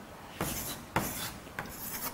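Chalk writing on a blackboard: a few scraping strokes as letters are written, two longer strokes about half a second and a second in, then shorter taps and scrapes.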